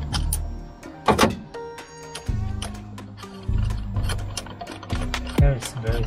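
Background music with a ratchet clicking in short runs as a spark plug is turned out of a Toyota 7A-FE engine on a socket extension.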